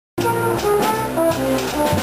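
Flugelhorn playing a quick jazz solo line, one note after another, over a lower bass line from the accompanying combo.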